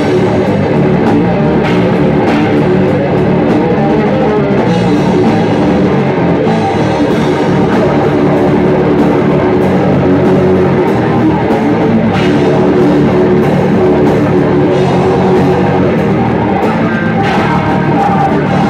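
A death/thrash metal band playing live: distorted electric guitar and bass guitar over a drum kit, loud and continuous.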